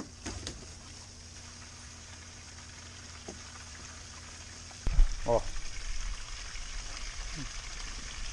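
Faint steady hiss with a low hum. About five seconds in, a sudden loud low rumble starts and carries on: the camera being picked up and handled.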